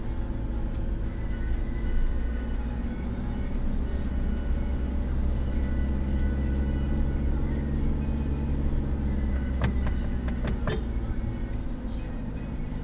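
Car engine running at low speed with road noise, heard from inside the cabin, with three or four sharp clicks about ten seconds in.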